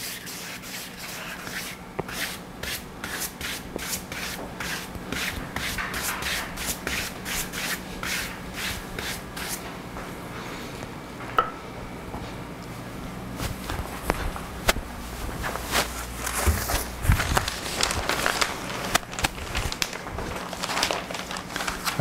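Palm-fibre mounting brush stroked briskly over damp paper on a glass sheet: a quick run of dry, scratchy brushing strokes, which break off for a few seconds around the middle and pick up again with paper rustling toward the end.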